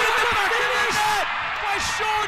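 Several voices shouting and cheering over each other, over a dense haze of stadium noise, as a goal is celebrated.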